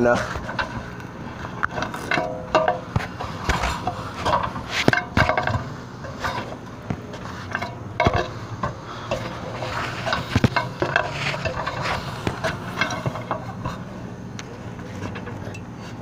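Metal extension ladder clanking and rattling under a climber's steps and hand grips, a run of irregular knocks and clicks with a few short metallic rings.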